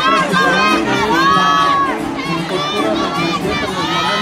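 A large crowd of many voices shouting and cheering at once.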